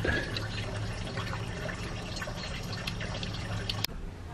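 Steady background noise with a low hum, cut off by a click near the end.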